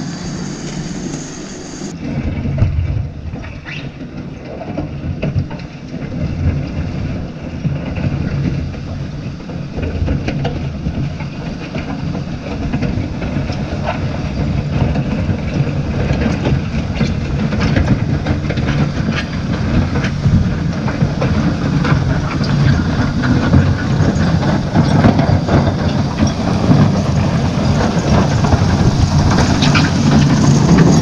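Fiat-Hitachi W190 wheel loader's diesel engine working under load, with the steel chains on its tyres clinking and stones crunching under the bucket as it pushes debris along a gravel road. It grows steadily louder as the machine comes close.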